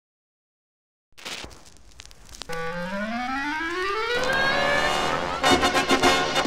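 Big band jazz record playing: after a few faint clicks, a clarinet slides up in a long rising glissando and lands on a held note as the band comes in under it. Louder brass chords come in near the end.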